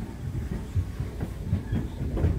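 A Class 508 electric multiple unit running, heard from inside the carriage: a low rumble with a run of irregular knocks from the wheels over the rail joints, growing busier about halfway through.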